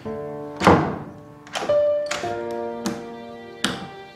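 Hands pounding on a closed wooden door, four irregular blows, the first the loudest, over a background music score of sustained notes.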